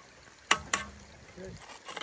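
A hand trowel knocking twice, a quarter second apart, while wet cement is smoothed around the foot of a steel railing post. A voice speaks briefly near the end.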